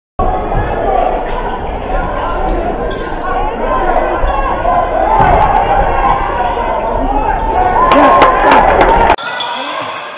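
Basketball game in a gym: many spectators' voices with a basketball bouncing on the wooden court and sharp knocks from play. About nine seconds in, the sound cuts abruptly to a quieter gym.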